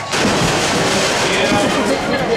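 Noise of a rodeo arena crowd starting abruptly, with a muffled voice talking over it.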